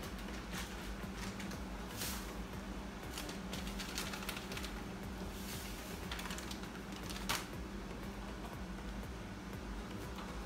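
Light scattered clicks and rustles as banga spices are added by hand to a pot of palm-nut soup, over a low steady hum.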